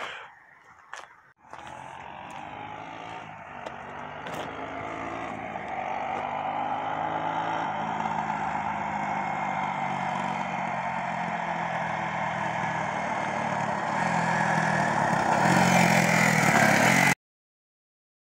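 Honda ATC 200E three-wheeler's single-cylinder four-stroke engine running under way as it rides toward the listener, growing steadily louder as it approaches and loudest near the end as it passes close by, then cut off abruptly.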